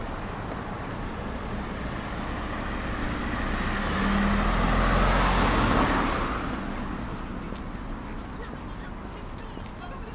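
Street traffic with a car passing close by: engine and tyre noise build up, peak about five seconds in, then fade away.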